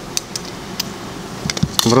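Glass medicine ampoules being crushed with pliers in the kerosene solution: several sharp clicks and cracks of breaking glass, with a cluster of them near the end.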